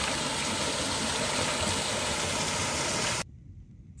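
Small waterfall pouring over a rock ledge into a creek pool: a steady rush of water that cuts off about three seconds in.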